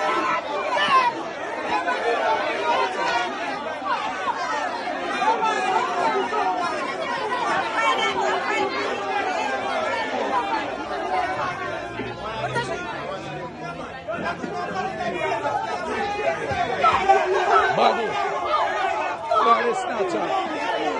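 Crowd chatter: many voices talking over one another at once, with no single voice standing out, growing a little louder near the end.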